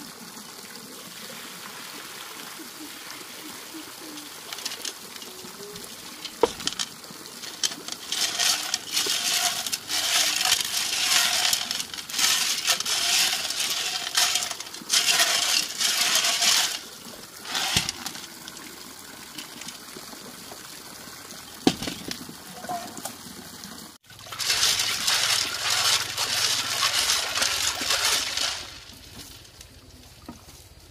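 Small freshwater snails being washed by hand in a metal pot of water: shells rattling and clicking against each other and the pot, with water sloshing and pouring, in a few long bursts and the odd sharp click.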